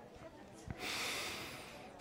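A man's breath close to the microphone, lasting a little over a second and fading, just after a small mouth click.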